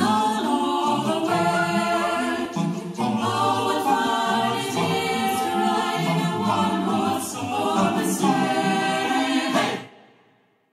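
Background music: an a cappella group of several voices singing a cheerful song, cut off abruptly near the end.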